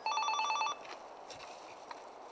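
Apartment-block door intercom sounding its call signal, a fast two-tone electronic warble that lasts under a second: a call ringing through from the entrance panel to an apartment.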